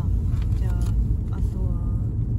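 Steady low rumble of a Toyota Crown Majesta's V8 and its tyres, heard from inside the cabin while cruising, with a brief murmured voice over it.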